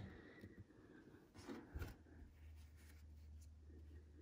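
Near silence with faint room tone; a couple of soft knocks about one and a half seconds in as a plastic glue bottle is set down on a table, then a faint low hum.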